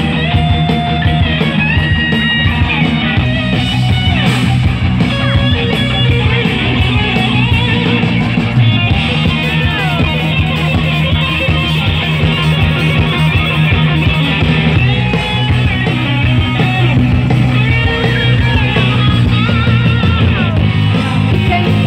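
Rock band playing live through a PA, an electric guitar to the fore over drums, loud and continuous.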